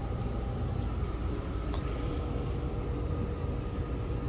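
Steady low background rumble of the room with a faint steady hum, and a few faint light clicks.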